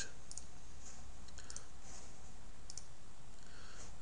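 Computer mouse clicks: three pairs of faint clicks about a second apart, over a steady low background hum.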